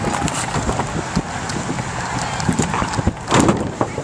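Irregular knocks and thumps of a rider on a mat sliding down a giant carnival slide, the camera jolting over the slide's bumps, with a louder burst of noise a little after three seconds.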